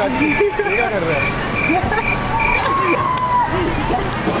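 People's voices, shouting and laughing without clear words, over a short high beep that repeats about twice a second and stops about three seconds in.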